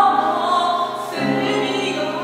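A female opera singer holding a sung line over grand piano accompaniment, with a new piano chord coming in about a second in.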